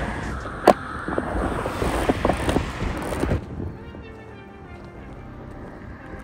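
Wind buffeting the microphone, with one sharp click less than a second in as the Olympus XA's shutter is released. About halfway through the wind cuts off and faint music takes over.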